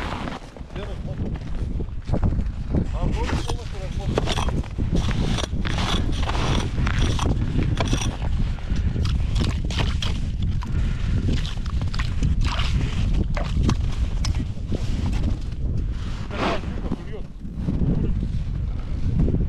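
Wind buffeting the microphone in a steady low rumble, with repeated crunches, scrapes and clicks of a winter tip-up, its spool and line being handled in snow at an ice hole.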